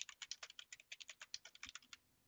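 Typing on a computer keyboard: a quick, faint run of keystrokes, about ten a second, stopping near the end.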